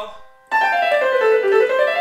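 Piano keyboard playing a descending scale run on the white keys in C major, starting about half a second in, the notes stepping steadily down in pitch.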